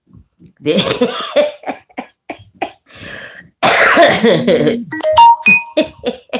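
A woman laughing hard in irregular breathy bursts, breaking into coughing, with a loud wheezy stretch about two-thirds of the way through. A few short steady electronic tones sound near the end.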